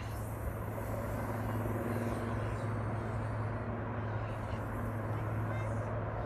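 Steady low rumble of an outdoor field recording, with faint voices.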